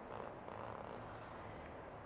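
Faint soft rustling of a silk scarf being spread out and lifted by hand, over the steady low hum of room fans.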